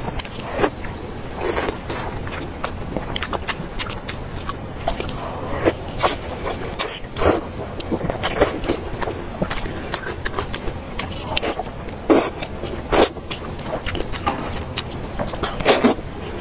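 Close-miked chewing and biting of braised pork belly: a steady run of wet mouth clicks and smacks, with a few louder ones scattered through.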